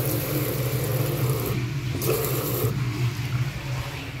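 Water from a commercial sink tap running into a ceramic basin and over the drain, in two spells with a short break, stopping a little under three seconds in. A steady low hum runs underneath.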